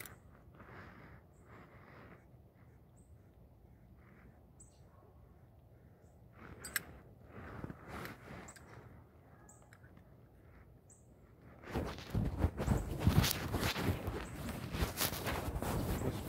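Handling noise from a phone carried in a pocket: clothing rustling against the microphone, faint at first with a few short high chirps. About twelve seconds in it turns into loud, dense crackling rubbing.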